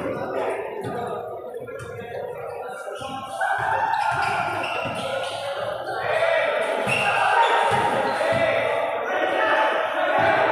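A basketball being dribbled and bounced on a concrete court, a string of short thuds, under the shouts and chatter of players and onlookers, echoing under a large open-sided steel roof.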